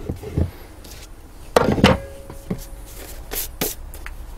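A clamp being taken off and chipboard boards and a book being handled on a laminate workbench: light knocks at first, two louder wooden knocks about a second and a half in with a faint ring after them, then two sharp clicks near the end.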